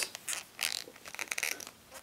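Clear TPU soft shell case rubbing and scraping against an iPhone as it is pressed and fitted onto the phone's edges, in two short scratchy rubs with a few small clicks.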